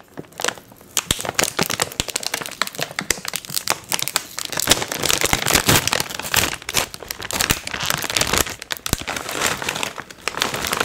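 Foil-lined chip bag crinkling as hands handle it and spread it open close to the microphone: a dense, irregular run of crackles starting about a second in.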